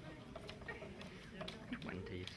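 Faint paper rustling and small crackles as a tightly sealed envelope is worked at by hand, with quiet voices in the room.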